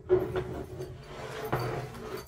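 A Mount-It MI-15007 standing desk converter, a metal frame with a wooden top, scraping and knocking against the desktop as it is tipped up and turned over. A sharp knock comes just after the start, with a few lighter knocks after it.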